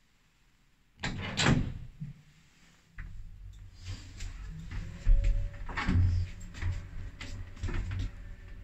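A Zremb passenger lift with an inverter drive. About a second in, its doors close with a bang. From about three seconds the car sets off on its run, with a steady low hum, a faint steady whine, and repeated clicks and knocks.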